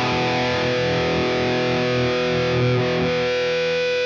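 Distorted electric guitar, played through a Line 6 Helix amp modeler, ringing out one sustained strum while Blue Cat AcouFiend's generated feedback tone slowly swells in over it; its fade-in is set to the slowest setting.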